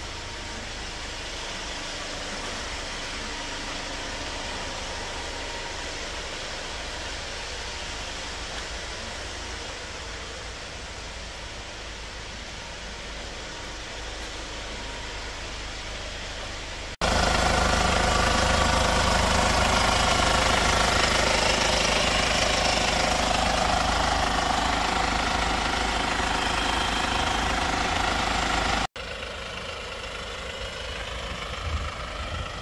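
Hyundai Starex ambulance engine idling steadily. About seventeen seconds in the sound jumps louder, with a steady hum of several tones, then drops back abruptly shortly before the end.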